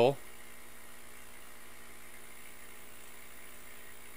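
Faint, steady buzzing hum of a laser engraver's air-assist air pump running.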